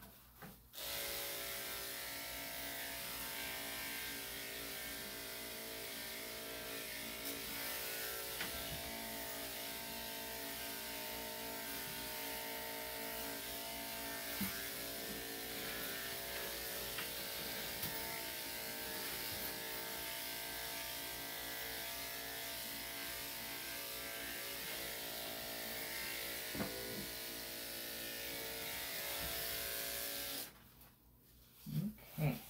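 Corded electric dog clippers fitted with a #3 3/4 blade, switched on about a second in and running steadily while clipping a puppy's coat. A few short, soft knocks sound over the hum.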